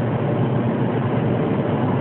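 Steady road and engine rumble inside a car's cabin as the car drives along.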